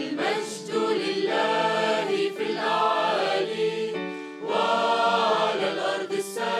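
Mixed choir of women's and men's voices singing held chords, with a brief break about four seconds in before the next phrase.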